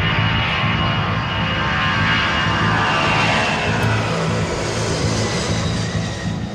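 An aircraft flying past, a loud steady rush whose pitch falls as it goes by, over a low music score.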